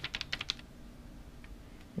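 A quick run of light clicks and crackles from a hand handling the glossy paper pages of a catalogue, bunched in the first half second, then only a faint steady low hum.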